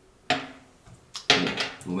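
A small glass dropper bottle knocks once against the stone countertop with a short clink, then a man's voice starts about a second later, reading out an oil's name.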